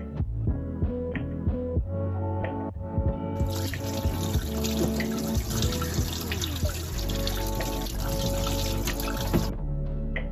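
Kitchen tap running into a stainless steel sink as gutted sardines are rinsed under the stream; the water comes on about three seconds in and shuts off shortly before the end. Background music plays throughout.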